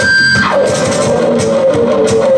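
Amplified electric guitar lead: a high held note slides steeply down about half a second in, then a lower note wavers rapidly back and forth.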